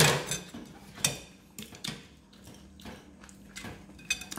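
A few sharp clicks and light taps of someone eating from a ceramic plate with a metal spoon and handling fried fish, the strongest right at the start, with quiet between.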